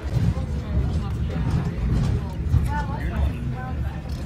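Tram running along its tracks, a heavy low rumble throughout, with faint voices of passengers around it.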